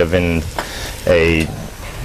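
Onion, carrot and celery frying in a hot pan, a steady sizzle under a man's short spoken words.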